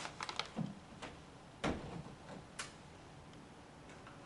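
Faint desk handling sounds at a table: a quick cluster of small clicks and paper rustle, then one duller thump on the tabletop about one and a half seconds in, and a last small click.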